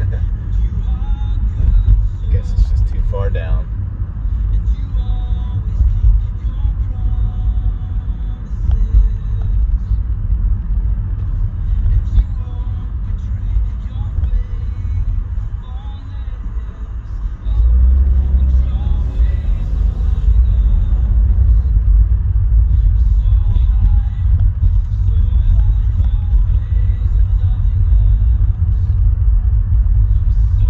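Interior road noise of a moving car: a steady low rumble from the engine and tyres, stepping up louder about seventeen seconds in and staying so.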